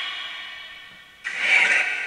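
Necrophonic spirit-box app playing through a phone speaker: an echoing tail of steady tones fades away, then a little over a second in a hissy, tone-laden burst starts suddenly and carries on.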